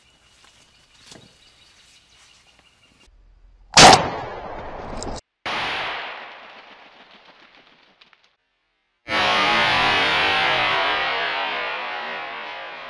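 A single gunshot about four seconds in, sharp and loud with a trailing echo, followed after a cut by a second decaying report. From about nine seconds a distorted electric guitar chord rings and slowly fades.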